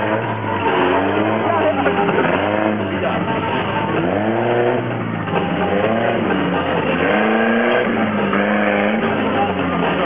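Engines of several oval-racing cars revving up and down over and over, their pitch rising and falling in overlapping sweeps as the cars spin and slide.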